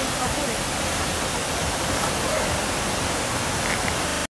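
Steady hiss of street ambience with a low rumble underneath.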